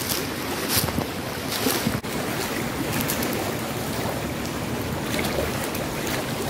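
A fast-flowing river rushes steadily. In the first two seconds a few footsteps crunch on leaves and stones. The sound changes abruptly about two seconds in, and the steady rush of the water carries on.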